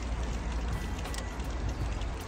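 Steady outdoor background noise: a low rumble under an even hiss, with no distinct event.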